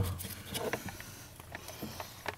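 Clicks and light handling noises of a brake light switch being worked into place by hand at the brake pedal, with one sharp click right at the start and fainter scattered clicks after.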